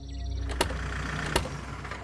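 A car's engine rumble and tyre noise as it pulls up, with two sharp clicks, over faint background music.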